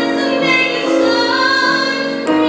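A woman singing a musical-theatre song solo with piano accompaniment, holding notes of about half a second to a second each and moving from note to note.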